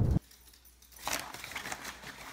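A loud rushing noise cuts off abruptly just after the start, then faint light clicks and rustles, like small handling sounds.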